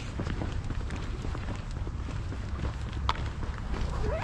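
Footsteps on pavement and the handling noise of a camera carried while walking, over a steady low rumble, with one short high squeak about three seconds in.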